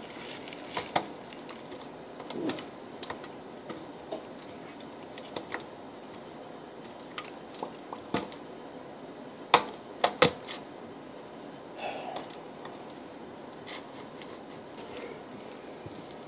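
Hands tearing and crumbling bread over a foil baking pan: soft, scattered rustles and small taps over quiet room tone, with two louder clicks a little past halfway.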